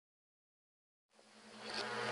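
Silence, then about a second in a low buzzing synth drone fades in and rises steadily: the swell at the start of an electronic intro track.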